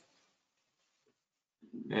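Near silence apart from a single faint click at the very start. A man's voice begins near the end.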